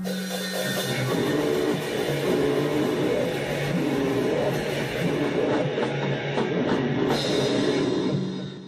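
Hardcore punk band playing: drum kit and distorted guitar in a dense, noisy wall of sound.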